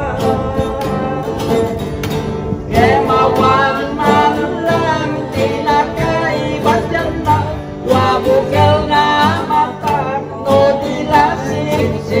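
Local string band playing an Ilokano folk song: several strummed acoustic guitars with a man singing into a microphone.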